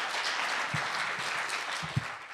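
Audience applauding steadily at the end of a lecture, with a low thump near the end.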